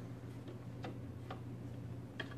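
A few faint, irregular clicks from streaming equipment being adjusted, over a steady low hum.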